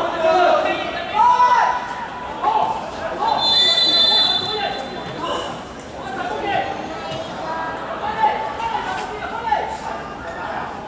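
Several people's voices talking and calling out, in bursts throughout. About three and a half seconds in, a brief steady high-pitched tone sounds for about a second.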